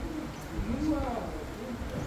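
Indistinct voices of people talking, with rising and falling pitch, over a low background rumble.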